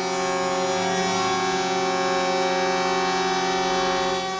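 One long, steady horn blast on a single unchanging pitch, most likely the air horn of one of the lorries lined up in the street.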